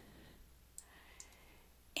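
A few faint, sharp computer clicks over a low, steady hum of room tone.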